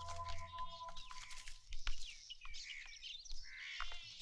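Film background music fading out about half a second in, leaving an outdoor ambience of scattered short bird chirps.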